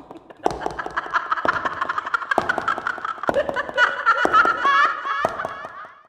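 A voice laughing at length in quick, repeated pulses, starting about half a second in and fading out near the end.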